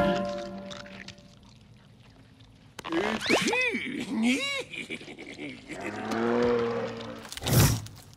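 Cartoon soundtrack: after a quiet stretch, a character's voice glides up and down in two sing-song phrases, the second a drawn-out "oui". Then comes a held musical chord and a short loud crash near the end.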